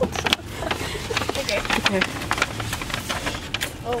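Paper crinkling and rustling in quick, irregular bursts as a wrapped gift is torn open, over the steady low hum of a car interior.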